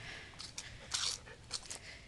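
A few faint crunches of steps on dry grass, leaves and dirt, the clearest about a second in.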